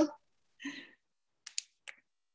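A few short, sharp clicks, three of them close together about a second and a half in, after a soft brief sound; small clicks like a mouse or keys over a video-call line.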